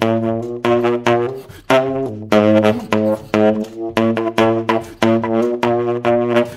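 Solo jazz saxophone music: a low held tone runs under short, sharply attacked notes that repeat in quick succession.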